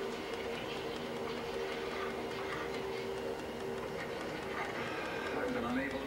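Steady droning tone over a rumbling hiss, with indistinct voices coming in about four and a half seconds in.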